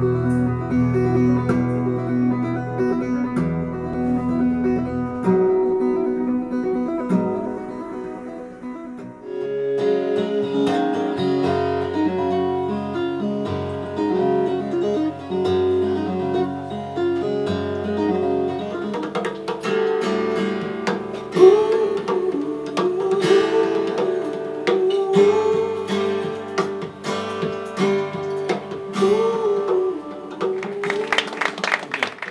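Acoustic guitar music, plucked and strummed over low bass notes; from about twenty seconds in the playing grows busier, with many sharp picked notes.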